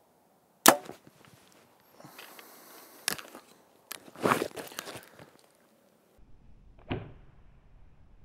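A Hoyt VTM 34 compound bow is shot: a sharp crack of the string as the arrow is released, about a second in. It is followed by lighter clicks and rustling of handling, and a single dull thud near the end.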